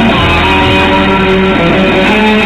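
Electric guitar played through an amplifier, loud held notes that ring on into one another.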